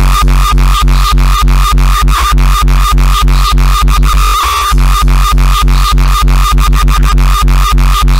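Uptempo hardcore electronic track: a heavy kick drum pounding about four times a second under a synth line, with a short break in the beat a little past halfway.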